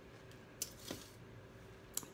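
Faint handling of food: a short rustle and two light clicks as a fried chicken wing is picked up off the platter.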